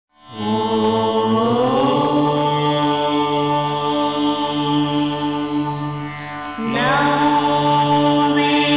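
Indian devotional intro music of long held notes over a steady drone. The pitch rises early on, and a new held phrase, also rising, comes in about six and a half seconds in.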